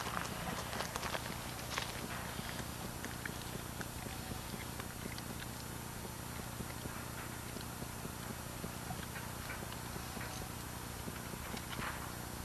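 Steady hiss and low hum from an old home-video camcorder recording, with faint scattered clicks and scuffs as a small dog moves about on gravel.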